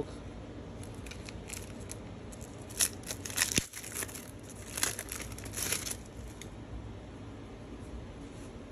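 A paper-and-foil trading-card pack wrapper being torn open and peeled back by hand, crinkling in a few short bursts between about three and six seconds in.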